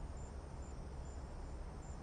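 Faint, high-pitched insect chirping, short chirps about twice a second, over a steady low background hum.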